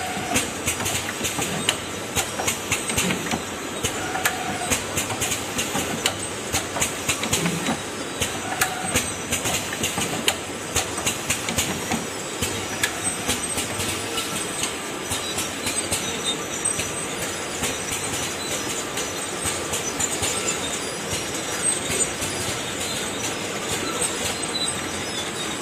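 Automatic bucket filling and packing line machinery running: a steady mechanical rattle with many irregular sharp clicks and knocks.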